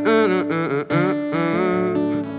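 Acoustic guitar chords ringing under a wordless, sliding vocal line sung by the guitarist, in two phrases with a brief break just before the middle.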